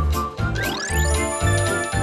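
Bright, upbeat TV-show bumper jingle: music over a steady bass beat, with chiming tinkles and rising swept tones about half a second in.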